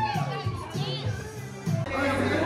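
Live band music from the stage in a concert hall, with audience voices shouting and singing along close by.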